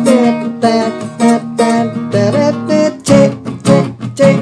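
Acoustic guitar strummed on a D minor chord, the closing chord of the song's ending, in a steady rhythm whose strokes come faster in the last second.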